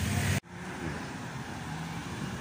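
Road traffic noise from cars: a loud steady low engine hum that cuts off abruptly less than half a second in, followed by a quieter, even rush of traffic.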